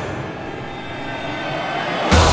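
Sustained suspense drone from a TV drama's background score: a steady chord of held tones that dips slightly, then grows louder toward the end.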